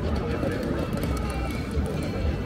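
Busy city street crossing: many people talking at once over a steady low traffic rumble.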